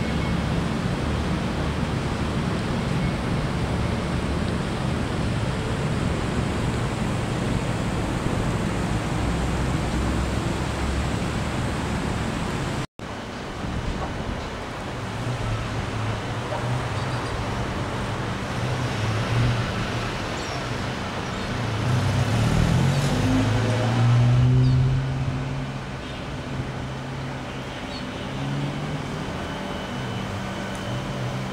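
City street traffic: steady road noise, then after an abrupt cut about 13 seconds in, cars passing, with one vehicle engine growing louder about 22 to 25 seconds in.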